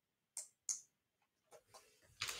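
Two short, sharp clicks about a third and two-thirds of a second in, then two faint ticks, in an otherwise quiet room.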